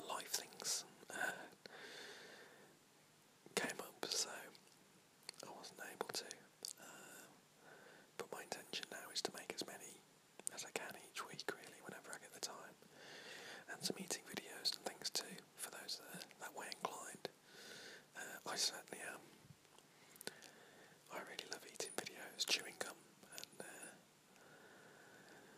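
A man whispering, in short breathy phrases with brief pauses between them.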